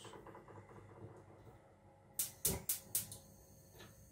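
Four or five sharp knocks and clatters of cookware being handled at a gas stove, coming in quick succession a little past halfway.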